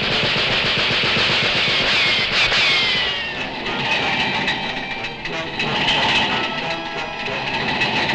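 Rapid cartoon machine-gun fire from two drum-fed Tommy guns during the first three seconds, over a loud orchestral score. The gunfire fades and the score carries on with a descending run.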